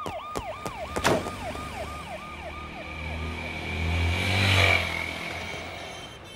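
Emergency-vehicle siren on a fast up-and-down sweep, about three cycles a second, fading away as the vehicle drives off. There is a sharp click about a second in, and a low rumble swells and dies away near the end.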